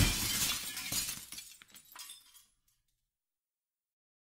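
A single sudden crash with a bright, noisy tail that dies away over about two and a half seconds, closing the song.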